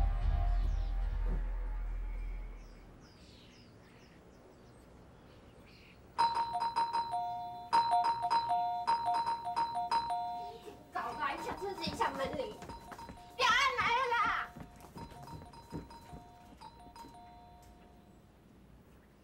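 Two-note electronic doorbell chime rung over and over, starting about six seconds in and running until near the end, with a voice calling out twice between rings.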